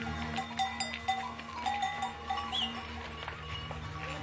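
Bells on pack mules clinking and ringing irregularly as the animals walk past, with hooves clicking on stone.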